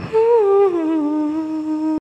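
A woman humming a closing note of the song: the pitch slides down in a couple of steps and then holds steady, cutting off abruptly at the end.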